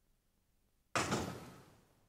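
A broadcast graphics transition sound effect: a sudden, noisy hit about a second in that fades out over about half a second.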